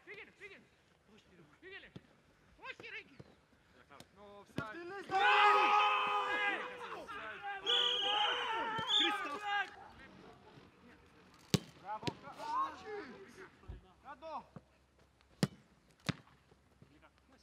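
Footballers shouting loudly for several seconds in the middle. After that come a few sharp thuds of a football being struck, two close together and one near the end.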